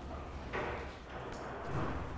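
Faint, steady background noise of a large warehouse room, with no distinct event standing out.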